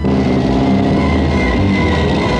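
Loud trailer soundtrack music that comes in abruptly, with sustained tones.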